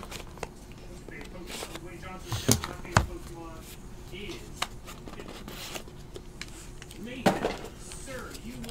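Cardboard 2016 Panini Prime Cuts Baseball box being unsealed and opened by hand: seal tape peeling, then a few sharp clicks and taps of the box flaps and inner box, the loudest about three seconds in and again near the end.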